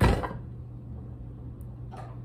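A single thump at the very start, dying away quickly: a bare hand chopping down karate-style onto a whole apple on a plate. A steady low hum follows.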